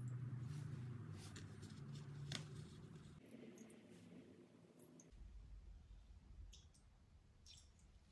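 Very quiet kitchen room tone with a low hum and a few faint, short clicks; the soy sauce pour is not plainly heard.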